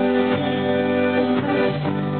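Live band playing an instrumental passage: held keyboard chords with guitar, and a few hand-drum strokes.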